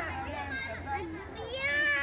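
Children playing: several high young voices calling and chattering over one another, louder in the second half.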